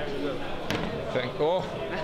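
Voices of people talking at a busy bar counter, with a single sharp knock a little under a second in.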